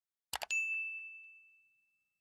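Sound effects from a subscribe-button animation: a quick double mouse click, then a bright notification-bell ding about half a second in that rings out and fades over about a second and a half.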